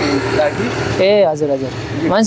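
A man's voice speaking, with a steady rushing noise under the first second.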